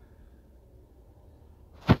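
Quiet room tone, then a single sharp, loud knock near the end.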